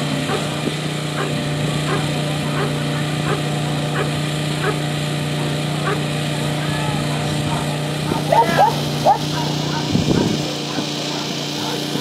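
Dog barking repeatedly in short, evenly spaced barks, with a few louder yelps about eight to nine seconds in, the excited barking of a coursing dog held back from the lure. A steady low hum runs underneath and cuts off about ten seconds in.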